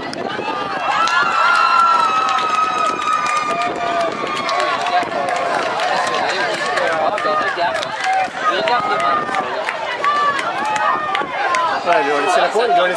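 Children and spectators shouting and cheering around a goal in a youth football match, with one long drawn-out shout in the first few seconds.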